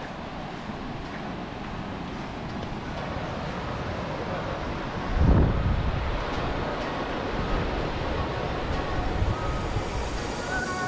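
Wind blowing across the microphone over a steady wash of noise, with one strong low buffet about five seconds in.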